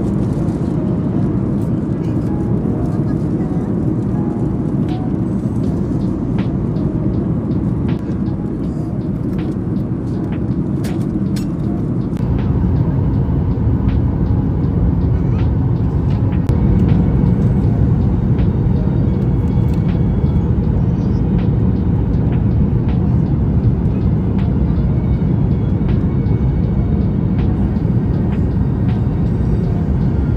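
Steady low roar of a jet airliner's cabin in flight, with scattered light clicks and taps through the first twelve seconds. About twelve seconds in, the roar gets a little louder and deeper.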